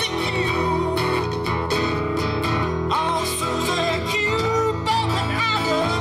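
Live guitar band music: an electric guitar plays a lead line with bent notes over a strummed acoustic guitar and a bass line.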